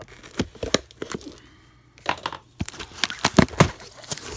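A cardboard shipping box being opened by hand: flaps and packing tape tearing and crackling, heard as a few sharp clicks early, then a dense run of crackles and rips in the second half.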